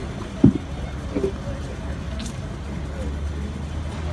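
Handheld microphone being handled as it is passed over: one sharp, low thump about half a second in. Under it a steady low rumble and a few faint voices.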